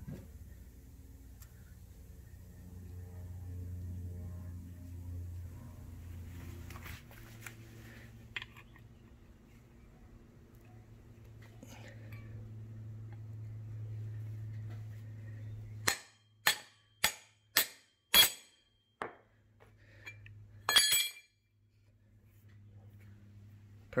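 Sharp metallic taps on a wheel hub as its grease seal is seated: about seven strikes roughly half a second apart, then a brief ringing metal clang.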